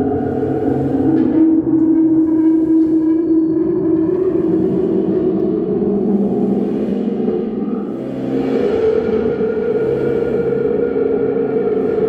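Free-improvised electronic music from a modular-synthesizer rig: a dense drone of several held tones layered together, their pitches sliding slowly. It thins briefly about eight seconds in, then swells back.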